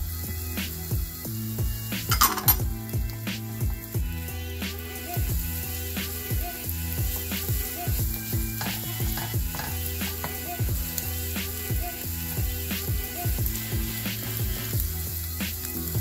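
Diced onion and garlic sizzling in oil in a nonstick frying pan, stirred with a silicone spatula that scrapes and taps the pan many times, with one louder scrape about two seconds in.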